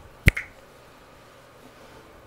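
A sharp snap, like a finger snap or a tap, with a softer second click a tenth of a second later, then quiet room tone.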